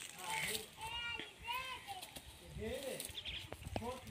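People's voices talking in short phrases, somewhat distant and not close to the microphone; no donkey braying is heard.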